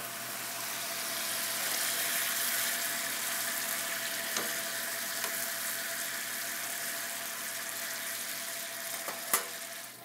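Chicken breast sizzling steadily in a frying pan of simmering, water-thinned barbecue sauce, over a faint steady hum, with a couple of light clicks about four and nine seconds in.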